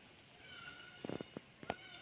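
A faint, thin animal cry heard twice, each short with a slight bend in pitch, with a few soft knocks in between.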